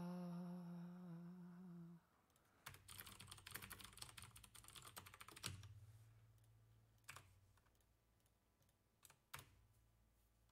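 Typing on a computer keyboard: a quick run of keystrokes for about three seconds, then a few single clicks spaced apart. Before it, a man's drawn-out hummed "uh" fades out about two seconds in.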